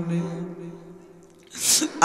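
A man's held sung note tails off, and after a quieter moment comes a short, sharp intake of breath close to the microphone, about a second and a half in, before the next chanted line.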